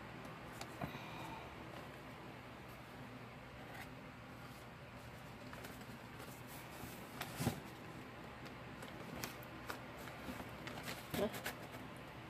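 Faint scattered clicks and taps of picture frames being handled and held together while they are glued into a box, over a steady low hum; the sharpest click comes about seven and a half seconds in, with a few more near the end.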